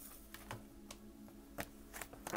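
A deck of oracle cards being handled and shuffled in the hands: a few light, scattered clicks and taps of card edges, over a faint steady hum.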